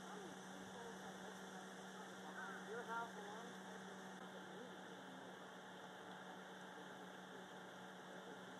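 Faint steady low hum, with a few brief faint pitched sounds about two and a half to three seconds in.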